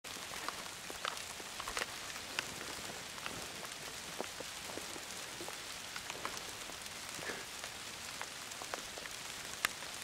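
Light rain falling: a faint steady hiss with scattered sharp drop ticks at irregular intervals.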